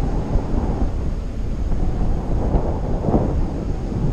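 Airflow from paraglider flight buffeting a GoPro action camera's microphone: a loud, steady low rumble.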